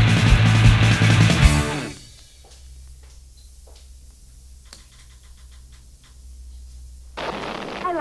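Loud rock song by a band, cutting out about two seconds in as its last sound slides down in pitch. Then a low steady hum with a few faint clicks, and a voice starts speaking near the end.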